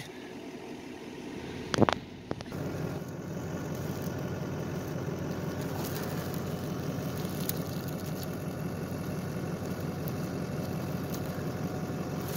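A 6.6 L LBZ Duramax V8 turbo-diesel idling steadily, with a sharp knock about two seconds in.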